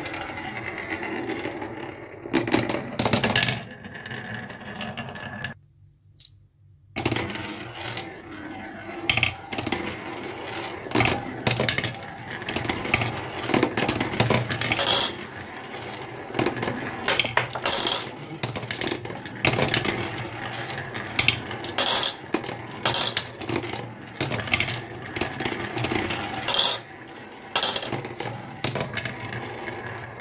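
Two glass marbles rolling around a plywood spiral marble-run track: a steady rolling rumble dotted with sharp clicks and clacks as they knock against the wooden walls and each other. The sound drops out briefly about six seconds in.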